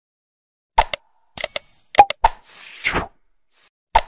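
Sound effects for an animated subscribe button. After nearly a second of silence come a couple of sharp clicks, then a short bell-like ding with ringing high tones, more clicks, and a whoosh.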